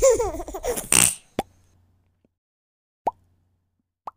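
A baby's happy vocalising for about a second, then two short rising 'plop' sound effects about one and a half seconds apart.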